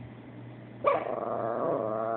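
Chihuahua "talking": a drawn-out, wavering growl-moan of complaint that starts sharply about a second in and keeps going.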